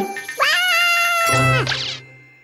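A long, high-pitched, whiny cartoon vocal cry, meow-like, that swoops up and holds for over a second over light children's music. It ends in a quick rising swish as the scene changes.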